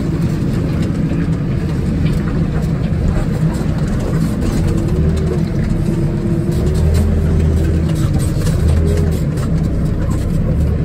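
Diesel engine of a JCB TM310S pivot-steer telescopic loader, heard from inside its cab as it drives with a full bucket of beet. The engine note swells and dips a few times as the throttle changes, and light rattles come through the cab.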